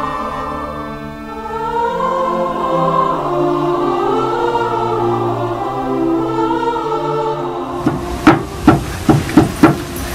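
Slow choral music with held voices, which stops about eight seconds in. It gives way to about six sharp, loud blows in under two seconds: a wooden mallet striking a chisel.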